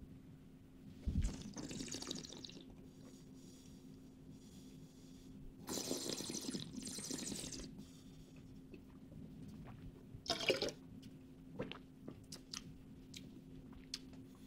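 Red wine being sipped and slurped in the mouth during tasting, air drawn through the liquid in a few short spells of airy, wet noise, with a brief one and a few small ticks later on.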